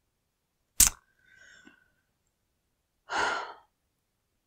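A sharp mouth click about a second in, then a woman's short sigh a little after three seconds.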